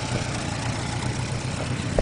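Nuffield Universal M4 tractor engine idling steadily.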